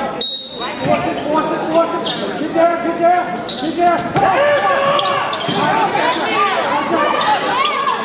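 Basketball bouncing on a hardwood gym floor during play, with players' and spectators' shouts, all echoing in a large gymnasium.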